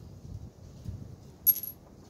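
A single sharp, high-pitched clink of knapped stone against stone about one and a half seconds in, with a brief ringing tail, as stone projectile points are handled. Soft bumps and rustles from handling the points and cane shafts come before it.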